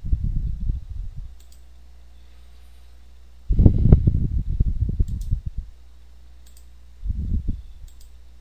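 Computer mouse being clicked and moved on the desk, heard as three clusters of low clicks and knocks: a short one at the start, a longer bout in the middle, and a brief one near the end. A steady low hum runs underneath.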